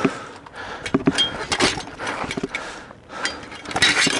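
Gladiators' weapon blows clashing on shields and metal helmets: a string of sharp knocks and clanks over the first two and a half seconds, a short lull, then a denser burst of strikes near the end. One blow lands on a helmet brim with a klonk.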